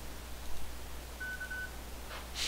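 A short, high electronic beep of about half a second, broken once, just past the middle, over a steady low electrical hum.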